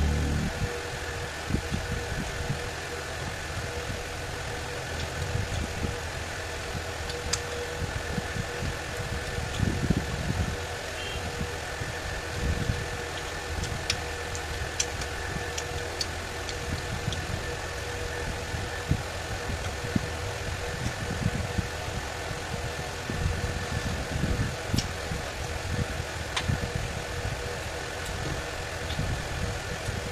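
Close-up eating sounds: fingers picking through fish curry on a metal plate, a few small clicks, and chewing. Under them runs a steady mechanical hum.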